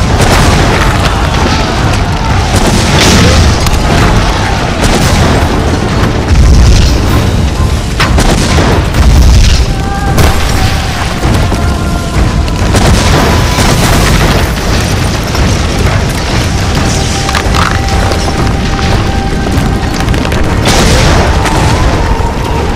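Film sound of rock blasting in a quarry: a rapid string of explosions, loud and heavy in the low end, going off one after another, mixed with a dramatic background score.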